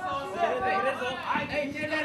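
Several voices calling out over one another: fight spectators shouting and chattering during a kickboxing bout.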